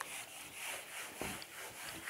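Whiteboard duster rubbed back and forth across a whiteboard, wiping off marker writing in a steady run of strokes, about two a second.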